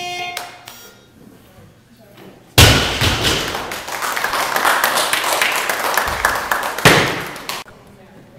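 A short beep, then about two and a half seconds in a sudden loud thud as the loaded barbell's bumper plates hit the lifting platform, followed by clapping and cheering for about five seconds that stops abruptly.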